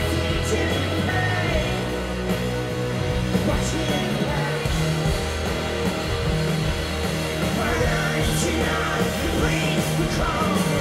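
Indie rock band playing live through a festival PA, heard from the crowd: electric guitars and drums over sustained bass notes, a full, steady mix.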